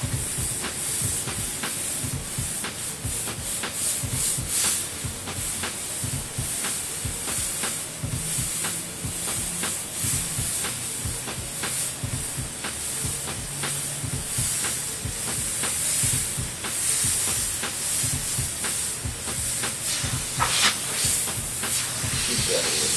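Airbrush spraying paint while lettering a name on a T-shirt, its hiss coming in many short bursts as the trigger is worked stroke by stroke.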